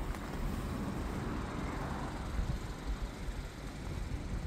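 Low, uneven wind rumble on the microphone.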